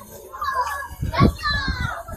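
Children's voices shouting and calling out among a crowd in a street, with a loud low thump about a second in.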